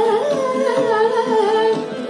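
A woman singing a Hindustani light-classical song, her voice moving through an ornamented, winding phrase that settles near the end, over the steady held notes of a harmonium.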